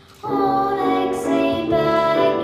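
A young girl singing into a microphone with grand piano accompaniment; after a brief dip, voice and piano come in together about a quarter of a second in.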